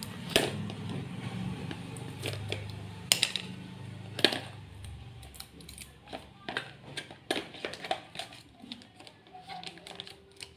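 A small cardboard phone box being unsealed and opened by hand: a plastic blade scraping through the seal, then the flap and the inner tray, giving a string of sharp clicks, taps and cardboard scrapes.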